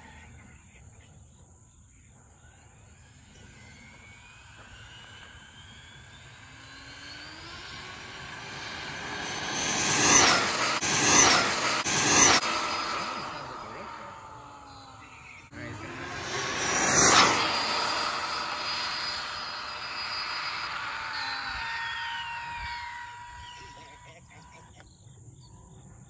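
Arrma Infraction V2 RC car's brushless electric motor and drivetrain whining at full throttle on a high-speed run. The whine climbs in pitch as it builds speed, is loudest in a cluster of surges about ten to twelve seconds in and again about seventeen seconds in, then trails off.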